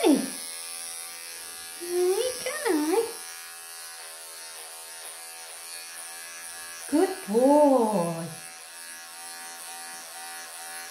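Cordless electric pet clippers running with a steady buzz as they cut through a Persian cat's matted, pelted coat. Two drawn-out voiced sounds that rise and fall in pitch cut in over the buzz, about two and seven seconds in.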